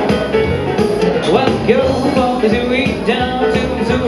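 Instrumental break played live on an arranger keyboard, with a backing of drums and bass on a steady beat under a lead melody that slides and bends between notes.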